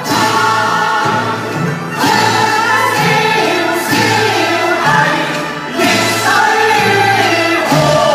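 Two male voices singing a Cantonese opera duet in phrases, with a string orchestra accompanying.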